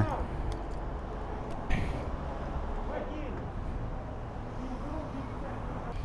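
Steady low background rumble of a fuel station forecourt with faint, distant voices, and a single sharp click a little under two seconds in.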